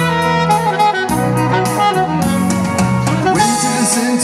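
Saxophone playing a melodic solo line over a live band's backing, with steady low notes underneath and cymbal-like hits on the beat.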